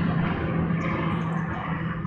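A steady low motor hum over a wash of outdoor background noise.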